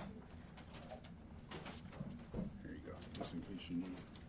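A low, muffled voice murmuring indistinctly in the second half, with a few light clicks and knocks.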